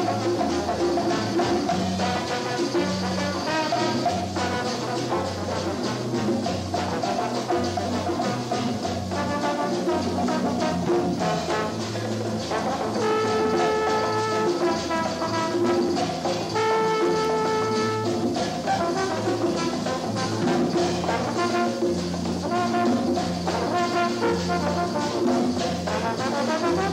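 Jazz band playing, with a horn section of trumpet and trombone over a repeating bass line and drums. The horns hold two long notes about halfway through.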